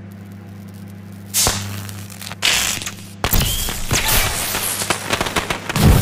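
Microwave oven humming as it runs, broken by a sharp crack and then a louder pop as the takeout box inside starts to spark. About three seconds in the hum gives way to continuous loud crackling and popping as the box bursts into flames inside the oven.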